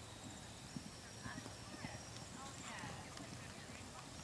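Faint hoofbeats of a pony cantering on soft arena dirt, an irregular run of soft low thuds.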